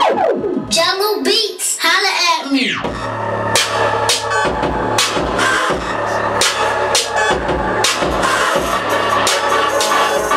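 A hip-hop beat playing loud over studio speakers. Over the first few seconds a sweeping, falling pitch effect plays with little low end. About three seconds in, the drums and a deep bass come in with a steady beat.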